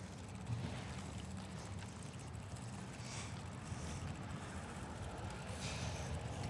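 Steady low rumble of wind on the microphone and bicycle tyres rolling over pavement while riding, with a couple of brief hisses about halfway and near the end.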